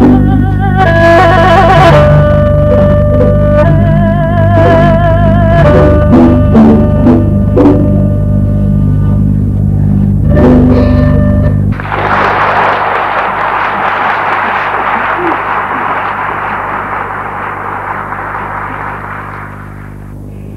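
A Chinese two-string fiddle (huqin) plays a melody with vibrato over a string orchestra; the music stops about twelve seconds in. Audience applause follows and slowly fades.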